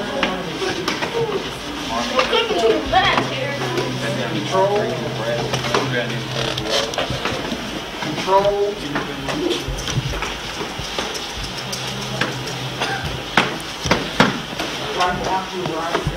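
Indistinct voices of several people talking in a room, broken by scattered sharp slaps and thumps, typical of sparring kicks and footwork in a karate class. A low hum comes and goes twice.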